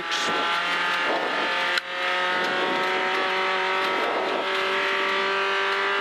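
Renault Clio V1600 rally car's engine running hard at high revs, heard from inside the cabin, with one quick break about two seconds in as the driver changes gear.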